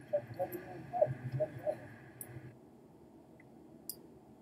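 Low, faint background: a few short, faint voice-like sounds over a steady hiss that cuts off about two and a half seconds in, then a single sharp click of a computer mouse near the end.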